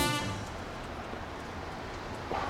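The final brass chord of a swing-style jingle dies away in the first moment. After that there is a steady, even hiss of outdoor background noise.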